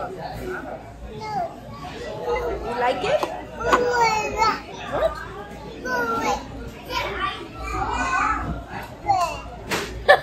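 A toddler babbling and vocalizing, with an adult voice and café chatter around him.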